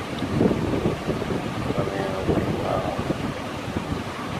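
Wind gusting on the microphone with irregular, rumbling buffets, with ocean surf washing behind it.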